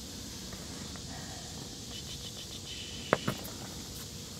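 Steady low background noise with two short, sharp clicks a fraction of a second apart about three seconds in, from pins being pressed through a snakeskin into the drying board.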